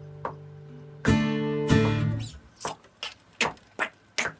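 Acoustic guitar: a held chord fades under faint ticks at an even beat about every 0.8 s. About a second in come two loud strums of a new chord, which is the wrong chord, and they are stopped short within a second. Short sharp sounds follow toward the end.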